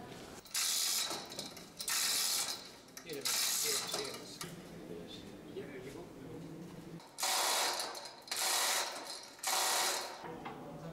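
Manual chain hoist on a gantry being worked to lift a heavy marble slab: six short bursts of chain and ratchet rattling, each under a second, with pauses between them.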